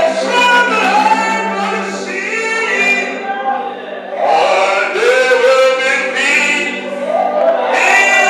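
Gospel singing in church: a man's voice leads through a microphone with voices singing along, in sung phrases with a short break about halfway.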